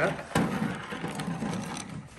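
Hard plastic tool case being handled and opened: a sharp snap of its latch about a third of a second in, then the lid and tray rattling and knocking as it is turned and swung open.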